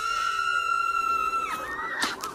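A person's long, high-pitched yell held on one note for about a second and a half, followed near the end by a short, slightly higher cry.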